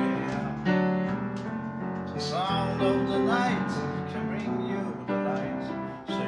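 Upright piano playing a song accompaniment, with a voice singing a melody over it.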